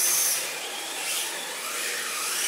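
Electric motors of 1/10-scale RC drift cars whining, the pitch rising and falling with the throttle, over a steady high hiss.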